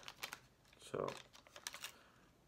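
Light clicks and taps of fingers handling a soft-plastic shrimp lure: a quick cluster in the first half second and another near the end.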